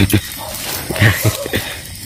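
A few short knocks of a small metal can pounding chili and salt in a small bowl: a pair right at the start and a cluster a second later.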